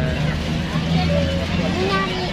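Indistinct voices of a crowd talking, over a steady low rumble.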